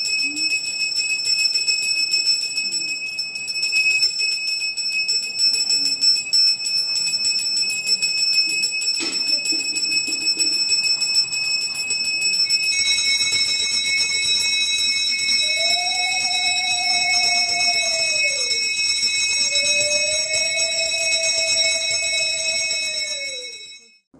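A puja hand bell rung continuously and rapidly during aarti, its ringing changing about halfway through as another bell takes over or joins. In the second half a conch shell is blown twice, two long held notes that each sag at the end.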